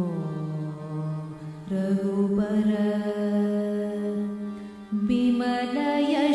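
Carnatic-style devotional singing in ragamalika: a voice holds long melismatic notes, gliding down at first, then stepping up in pitch twice.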